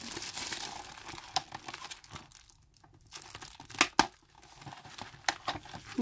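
Clear plastic packaging wrap being crinkled and torn in the hands, with a scatter of sharp crackles. The loudest crackles come a little under four seconds in.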